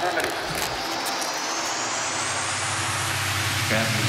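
Electronic dance music in a dark progressive psytrance mix: a noisy build-up with a pitch sweep that rises steadily. About three seconds in, the deep bass comes back in.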